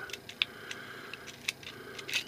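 Light metallic clicks and ticks from a Walther P22 .22 pistol magazine being worked by hand. There are two sharper clicks, one near the start and one about a second and a half in, among fainter ticks.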